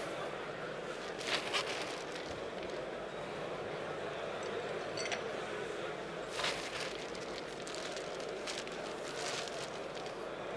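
Steady room noise, with a few brief faint clicks and knocks scattered through it.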